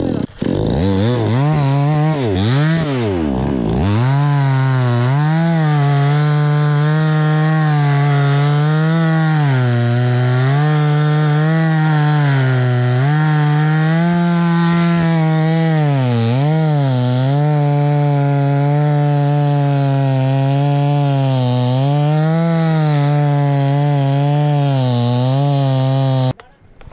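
Two-stroke chainsaw revved up and down quickly for the first few seconds, then held at full throttle sawing into an acacia trunk, its pitch dipping again and again as the chain loads up in the cut.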